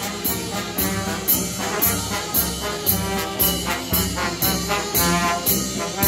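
Marching brass band playing a march: tubas, euphoniums, French horns and trombones in chords, over a steady percussion beat led by a bass drum, about two strokes a second.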